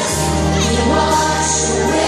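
Children's choir singing along with accompanying music, over steady held bass notes.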